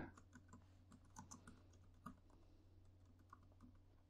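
Faint typing on a computer keyboard: a scattering of light key clicks, with a quick run of several about a second in.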